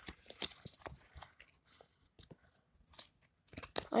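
Foil wrapper of a Pokémon trading-card booster pack crinkling and crackling in the hands as the pack is worked open. The crackling is dense for the first second and a half, then comes in scattered bursts.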